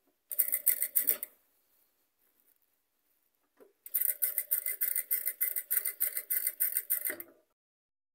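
Electric sewing machine stitching through layered tulle in two runs: a short burst of about a second near the start, then a longer steady run of about three seconds from about four seconds in.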